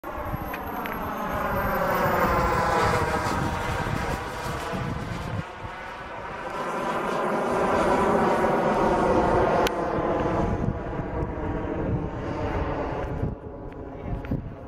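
Kerosene-fuelled model jet turbine of a radio-controlled BAe Hawk in flight, its sound swelling twice as the jet passes, loudest about eight seconds in and dropping away near the end.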